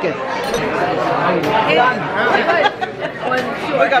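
Chatter of several overlapping voices in a restaurant dining room.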